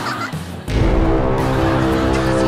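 The tail of a man's shrill, warbling scream, then loud music with sustained notes cutting in under a second in.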